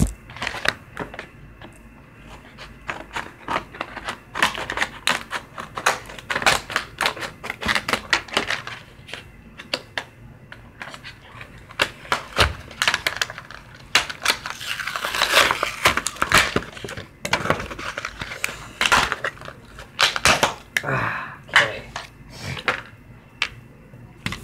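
Hard plastic packaging of a fishing hook-remover tool being worked open by hand: a run of irregular clicks and snaps, with a longer stretch of rasping plastic a little past halfway, amid handling noise on the phone's microphone.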